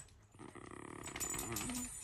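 Miniature schnauzer whining, a faint drawn-out whimper starting about half a second in and falling in pitch near the end; he is unhappy wearing a plastic cone collar.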